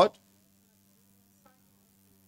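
Near silence in a pause of amplified speech: only a faint, steady electrical hum, after the last syllable of a man's word through the microphone cuts off at the very start.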